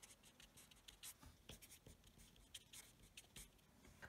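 Felt-tip pen writing on paper: faint, irregular scratching strokes.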